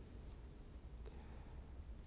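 Near silence: quiet room tone with a low hum and a faint click or two around the middle.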